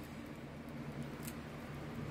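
Faint small clicks and scratches of fingers picking at a 3D-printed silk PLA articulated dragon, over a steady low hum.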